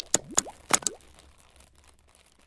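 Animated logo sound effects: four quick pops with rising pitch in the first second, then a fading tail.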